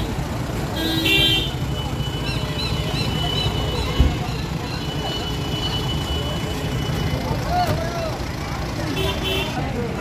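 Busy street: a vehicle horn toots briefly about a second in and again near the end, over crowd chatter and a low steady rumble. A single sharp knock sounds about four seconds in.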